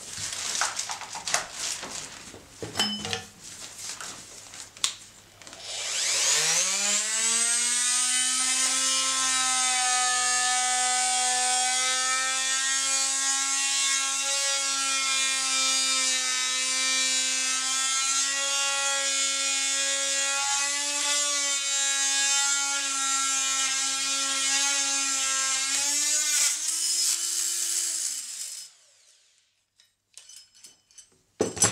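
Oscillating multi-tool (multizaag) run at full speed with its saw blade cutting into a wooden board: a loud, steady, high buzz that winds up quickly about six seconds in and winds down near the end. A few clicks and knocks from handling come before it starts.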